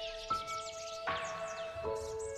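Slow, soft relaxation piano music, a new note struck about every three-quarters of a second and left ringing, with birds chirping quickly and repeatedly above it.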